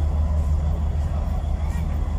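Steady low drone of a boat's engine running, a constant deep hum with no change in pitch.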